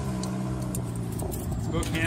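A car engine running with a steady low hum, and keys jangling.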